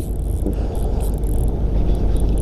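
A spinning reel cranked to bring in a hooked fish, with a few faint light ticks, over a steady low rumble.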